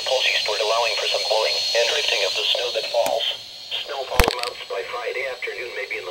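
NOAA Weather Radio broadcast from a Midland weather alert radio's small speaker: a thin, band-limited synthesized voice reading out a winter storm watch, with one sharp knock about four seconds in.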